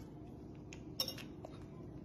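Quiet room with a single light metallic clink of a fork about a second in, and a few fainter ticks around it.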